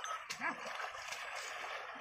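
A bullock pair and cart wading through flooded paddy mud, the water splashing steadily, with one short rising-and-falling yelp-like call about half a second in.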